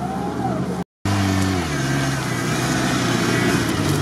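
Off-road truck's engine running close by. The revs drop in two steps about a second and a half in, then it runs steadily. The sound cuts out briefly about a second in.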